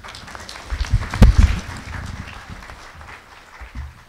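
Audience applauding, fading out over the last second or so. About a second in come loud thumps and bumps from a microphone being handled as it is moved along the panel table.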